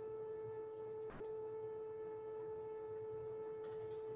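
A steady mid-pitched electronic tone with overtones, with one brief click about a second in.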